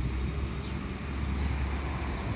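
Steady low rumble of wind buffeting the phone's microphone outdoors, over an even background hiss.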